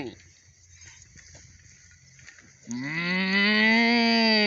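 One long moo, rising and then falling in pitch, starting a little under three seconds in and lasting about two seconds.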